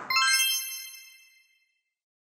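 A bright chime for a logo sting: one sudden ding made of several high ringing tones at once, fading out over about a second and a half.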